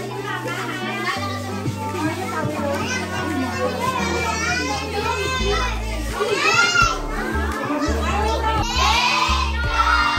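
A crowd of children chattering and shouting over music with a bass line, with loud high-pitched children's shouts about six and nine seconds in.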